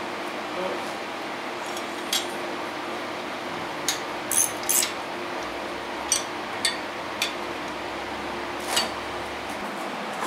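A wrench and bolts clinking against a steel turbo mounting bracket as it is bolted to the engine block: about eight short, sharp metallic clinks at irregular intervals, over a steady low hum.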